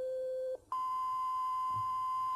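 Minimoog analog monophonic synthesizer's oscillator sounding steady single-pitch notes played from its keyboard. A short note is followed, after a brief gap, by a longer one about an octave higher, held for nearly two seconds.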